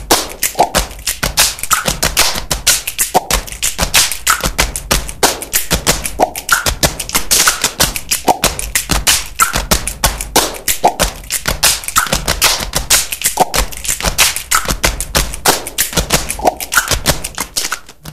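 Percussive title theme music: a dense, fast run of sharp taps and clicks, with a short pitched note recurring about once a second.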